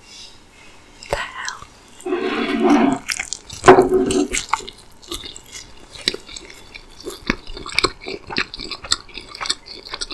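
Close-miked eating: bites and moist chewing of a McDonald's breakfast sandwich, heard as a run of many short wet clicks through the second half. Between about two and four seconds in there is a louder pitched mouth or voice sound, loudest near the four-second mark.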